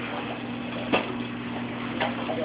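Steady low hum of saltwater aquarium pumps and filtration, with one sharp click about a second in.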